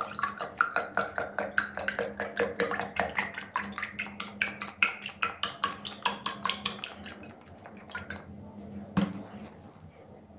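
Fruit juice glugging out of a carton into a glass mug in quick pulses, the pitch rising steadily as the glass fills, until the pour stops a few seconds before the end. A single knock follows near the end.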